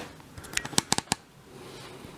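A quick run of about five sharp clicks and knocks from a built-in wardrobe door being handled and swung open, about half a second in.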